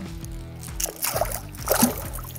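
Background music with steady low notes, over short splashes of water as a small pike is unhooked with pliers beside the boat and thrashes free, about a second in and again near the end.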